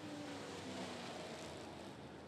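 Faint, distant dirt-track race car engines running slowly under a caution, a low drone whose tone falls gradually.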